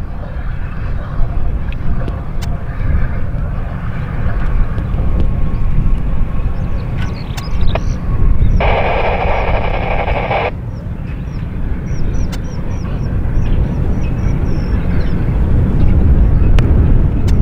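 Low, steady rumble of jet aircraft on a distant airfield taxiway. A short burst of hiss lasting about two seconds comes a little past the middle.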